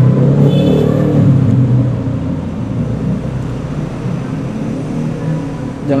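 A low rumble, loudest over the first two seconds and then weakening.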